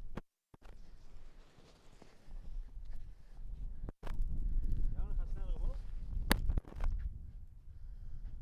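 Wind rumbling on the microphone outdoors, louder and gustier from about four seconds in, with a faint voice around the middle and a single sharp click a little after six seconds. The sound drops out briefly twice, near the start and at about four seconds.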